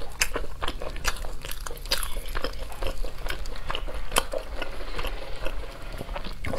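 Close-miked chewing of spiced roast chicken, heard as a dense, irregular run of short mouth clicks and smacks.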